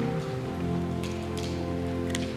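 Church organ holding sustained chords, shifting to a new chord about half a second in, with a light hiss and a few scattered clicks underneath.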